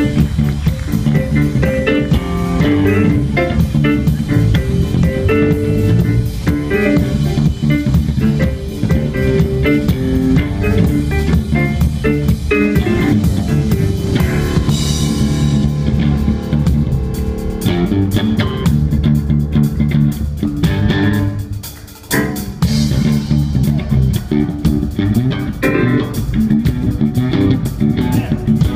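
Live blues band playing an instrumental passage on bass guitar, drum kit and stage piano. About three-quarters of the way through the band drops out for a moment, then comes straight back in.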